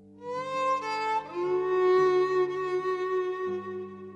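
Background music: a violin playing slow, long held notes that slide up into pitch, over low sustained notes beneath.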